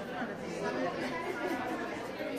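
Steady background chatter of several people talking at once, with no single voice standing out.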